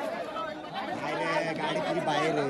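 Crowd of men talking and calling out over one another, with one voice held in a long call from about halfway through.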